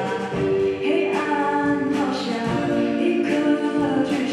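A live band performing a song: a singer holds long notes over guitars, keyboard and drums.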